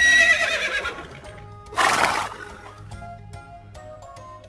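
Horse whinny sound effect: a loud neigh right at the start that falls away over about a second, then a short rushing burst about two seconds in.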